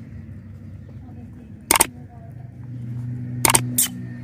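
A puppy licking a hard lollipop: three sharp wet smacks, one a little under two seconds in and two close together near the end, over a low steady hum.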